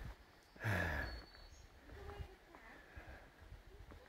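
A man's short breathy vocal sound about a second in, falling in pitch, then faint outdoor background.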